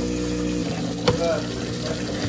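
Tap water running into a stainless-steel sink over spilled cereal, with a garbage disposal's steady motor hum underneath. A sharp click comes about a second in.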